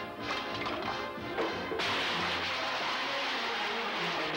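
Cartoon score music with a few sharp hits, then, a little under two seconds in, a long loud crashing clatter of junk and metal pots tumbling down, lasting about two seconds.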